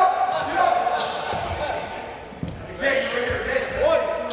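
Indistinct voices calling out in a reverberant gymnasium, with a few sharp bounces of a basketball on the hardwood court.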